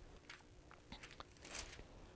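Near silence with a few faint, crisp rustles of thin Bible pages being turned.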